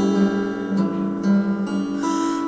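Music: acoustic guitar accompaniment of a song, with long held notes.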